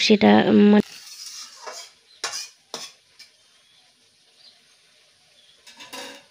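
A woman's voice briefly, then faint sizzling of food frying in a wok, with a few sharp clinks of a metal utensil against the pan and a short clatter near the end.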